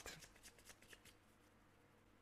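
Near silence, with faint rustling and a few small ticks from tarot cards being handled in the first second.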